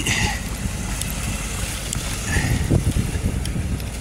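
City street noise: a steady low rumble of traffic, with wind buffeting the microphone.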